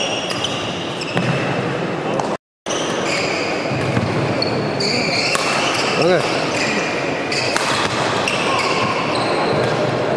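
Badminton rally on an indoor wooden court: rackets hit the shuttlecock with several sharp cracks, and shoes squeak repeatedly on the floor, in a reverberant hall. The sound drops out completely for a moment about two and a half seconds in.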